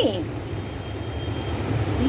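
A steady low background rumble, with a faint thin high tone for about a second in the middle.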